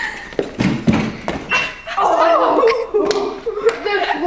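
A few dull thuds in a large hard-walled hallway, then a loud, drawn-out wavering voice from about halfway through.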